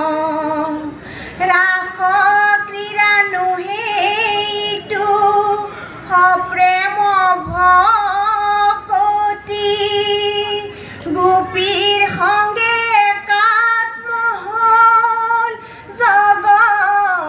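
Group of women singing an Assamese ayati naam devotional chant, in sung phrases separated by short breaks.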